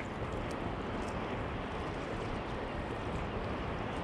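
Steady rushing noise of wind and sea water picked up by a camera mounted on a sea kayak's deck as it moves over choppy water.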